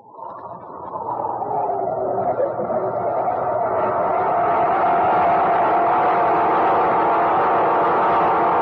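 Opening theme of an old-time radio drama: a sustained chord that swells up from silence over about four seconds and is then held steady.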